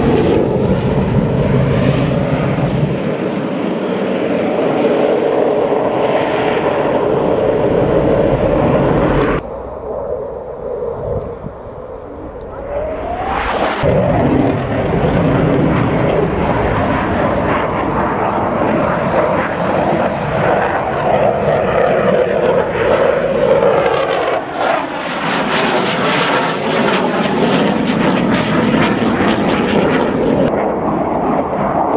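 Dassault Mirage 2000 fighter jets flying a display, their jet engines loud and rumbling overhead. About nine seconds in, the sound cuts abruptly to a quieter jet. Then a rising whine builds as a jet comes in, and it passes loudly, the pitch sweeping as it goes by.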